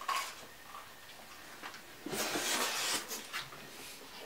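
A bite into a cheeseburger and chewing, with a short rustling, scraping noise about two seconds in that lasts about a second.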